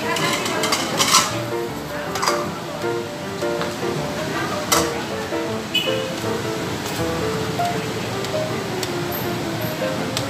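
Background music, a light melody of short stepped notes, over a noisy background of voices and clatter, with a few sharp clinks.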